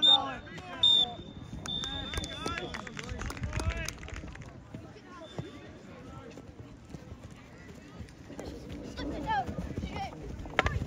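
A referee's whistle in a shinty match: two short loud blasts and then a longer one of about a second, with players' and spectators' voices around it.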